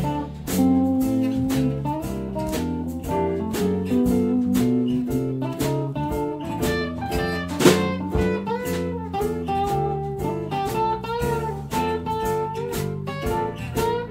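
Live blues-rock band playing an instrumental break: guitars strumming and picking over bass and keyboard to a regular beat, with one sharp accent about eight seconds in.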